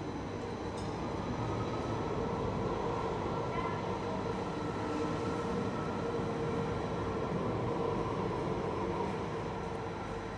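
A city tram passing slowly along the street, heard through window glass: a steady rumble that builds and then eases as the long, multi-section car goes by.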